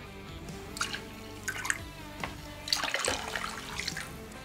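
Liquid yeast poured from a foil yeast packet into a fermenter of wort: a light trickle with a few small splashes, under soft background music.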